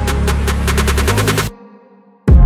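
Background electronic music: a drum roll of sharp strikes that comes faster and faster over a held bass note, the build-up to a drop. It cuts off suddenly about three-quarters of the way through, leaving a brief silent break.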